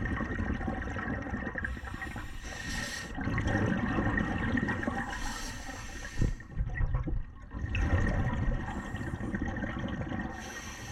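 Scuba regulator breathing heard underwater: three stretches of rushing, gurgling exhaled bubbles, with the hiss of an inhalation between them.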